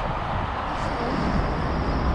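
Outdoor street ambience: a steady hiss of road traffic with a low, uneven rumble.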